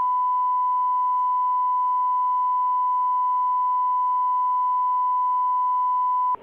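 Steady 1 kHz broadcast line-up test tone, held unbroken at one pitch, the tone that alternates with a spoken channel ident on a holding feed.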